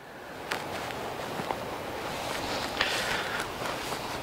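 Footsteps and rustling through dry grass and brush, a steady rustling noise that builds over the first couple of seconds, with a small click about half a second in.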